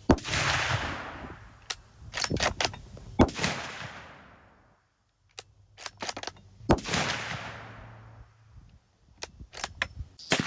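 Two shots from a .450 Bushmaster bolt-action rifle, about six and a half seconds apart, each followed by a long rolling echo. Between them come short metallic clicks of the bolt being worked to eject the spent case and chamber the next round.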